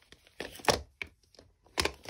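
Craft supplies being handled on a tabletop, a plastic ink pad among them: a few sharp knocks and clacks, the loudest about two-thirds of a second in and another near the end.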